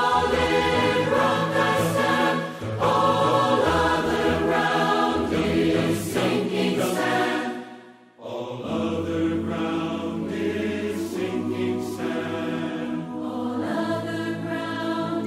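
A large virtual choir sings slow, held chords. The sound fades almost to nothing about eight seconds in, then the voices come back in.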